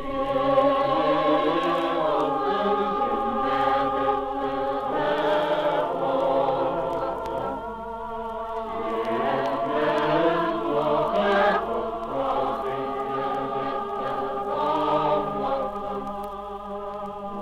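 Mixed choir of women's and men's voices singing sustained chords, entering at full voice right at the start after a pause, on an old recording with a dulled top end.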